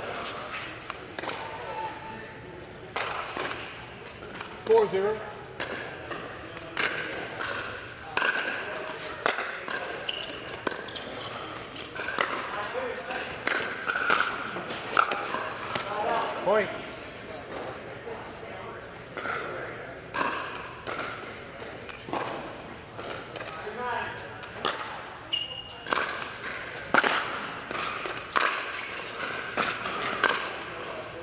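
Pickleball rallies: repeated sharp pops of paddles striking a plastic pickleball, and the ball bouncing on the hard court, echoing in a large indoor hall. Indistinct voices carry on in the background.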